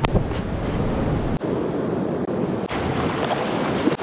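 Ocean surf washing, with wind buffeting the microphone; the deep rumble drops away about a third of the way in.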